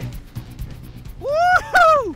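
A high whooping yell: two rising-and-falling 'whoo' calls just past the middle, louder than the rush of wind noise before them, as the skier takes the Golden Eagle jump.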